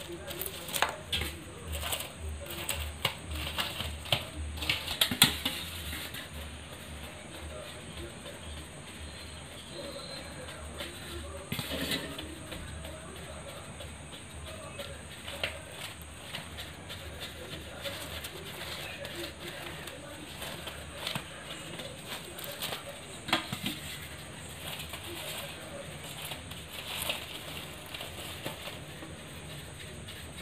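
Litti dough balls being turned by hand as they roast on charcoal: light knocks, clicks and scrapes, frequent in the first six seconds and sparse after that.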